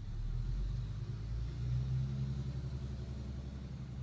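A motor vehicle's engine gives a low rumble that swells to its loudest about two seconds in and then fades.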